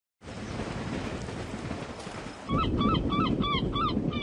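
Steady outdoor noise, then about two and a half seconds in a run of short, repeated bird calls, about five a second, over a louder rumbling background.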